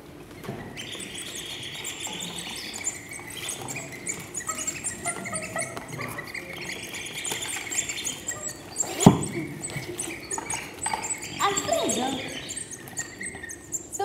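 Many small birds chirping and twittering, a birdsong recording played as a stage sound effect, with a single sharp knock about nine seconds in.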